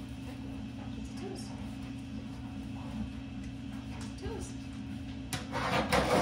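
A dog's front paw scratching across the sandpaper pad of a dog nail scratch board, a few quick rasping strokes starting near the end. A steady low hum runs underneath throughout.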